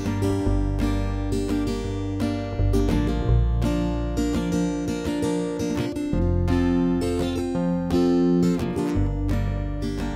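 Instrumental guitar intro: an acoustic guitar strums chords while a lap-style acoustic slide guitar plays long held notes over it.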